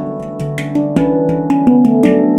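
Avalon Instruments handpan in D Ashakiran tuning played with the fingers: a quick run of about six struck notes, each ringing on under the next.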